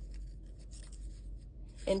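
Paper note-card flaps being handled and flipped on a desk: faint, scattered scratchy rustles of stiff paper.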